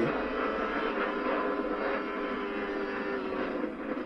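Sport motorcycle engine at high revs at full speed in top gear, heard from onboard track footage played through a TV speaker. The steady engine note over wind noise eases slightly lower in pitch in the second half.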